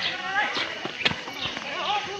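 Footsteps on a rocky dirt path, with one sharp knock about halfway, under the faint voices of other people.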